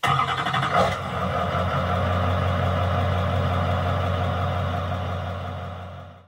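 Recycling lorry's engine running steadily, a deep even hum that starts abruptly, with a brief louder burst a little under a second in, then fades out near the end.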